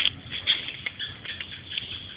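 Light, irregular pattering of small taps and scuffs, with a few sharper clicks.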